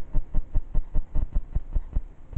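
A steady, fast, rhythmic pulsing thump, about six or seven beats a second.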